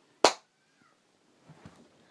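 A single sharp slap about a quarter of a second in, then faint rustling near the end.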